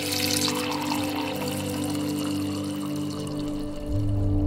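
Background music with steady held tones, over a thin stream of liquid pouring into a ceramic mug that fades out after the first second or so.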